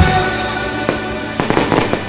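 Fireworks going off: a sharp bang about a second in, then a cluster of bangs and crackles in the second half, over background music.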